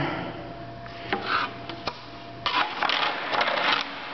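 Resawn cocobolo boards being shifted on a steel table-saw top: a couple of light wooden knocks, then a scraping rub of wood sliding across the metal for about a second near the end.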